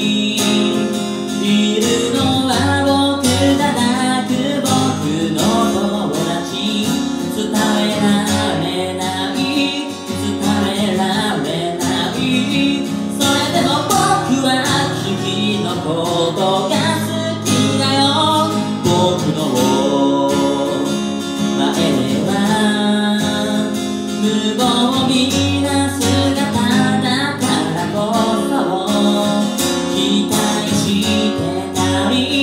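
A man singing a song while accompanying himself on an acoustic guitar.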